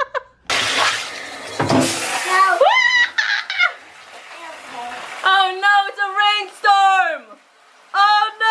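Water running into a bathtub, loud for about two seconds and then fading, followed by a young child's high voice calling out in drawn-out notes in a small tiled bathroom.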